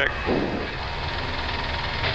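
Airbus A340-300 on its takeoff roll, heard from inside the cockpit: the steady noise of its four CFM56 engines at takeoff thrust, with a fluctuating low rumble underneath.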